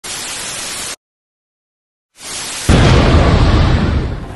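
Intro sound effects: television static hiss for about a second, then silence, then the static swells back and a loud boom hits about two and a half seconds in, its rumble dying away slowly.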